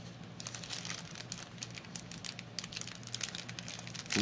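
Faint crinkling and light clicks of small plastic packaging being handled, scattered irregularly throughout.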